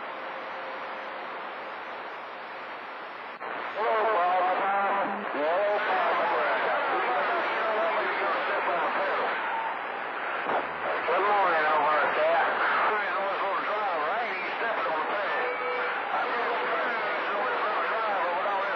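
A CB radio receiver on channel 28 picking up long-distance skip: steady static hiss for about three and a half seconds, then hard-to-make-out voices of distant stations talking through the noise, louder than the hiss alone. A faint steady whistle sits under the static at the start and again near the end.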